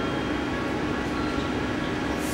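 JR Central 211 series electric train standing at the platform with its onboard equipment running: a steady hum and hiss with a few faint, thin high whines held steady.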